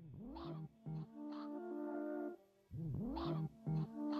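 Electronic music from a VCV Rack modular synthesizer patch: a sliding, swooping pitch sweep near the start and again about three seconds in, each followed by a held chord of steady tones over a low note.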